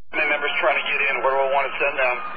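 A voice transmitting over a police dispatch radio channel, thin and narrow-sounding, keying up just after the start out of a silent channel; the words are not made out.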